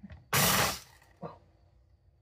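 An immersion blender's chopper attachment runs in one short pulse of about half a second, its blade grinding coarse sea salt and basil leaves in a noisy rattling rush that cuts off quickly.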